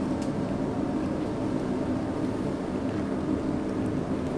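A steady low background hum with no distinct events, just a couple of faint ticks.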